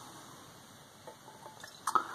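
Quiet room with faint glass handling: light clicks from a glass beer bottle and drinking glass, the sharpest one just before the end as the bottle neck comes to the glass.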